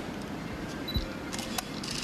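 Camera shutters clicking in a quick run in the second half, over faint room noise, with a soft low thump just before the clicks.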